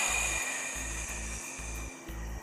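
A long, forceful Pilates exhale blown out through the mouth: a hissing breath that is strongest at the start and fades slowly over about two seconds, on the effort of a roll-back. It is picked up close on a clip-on microphone.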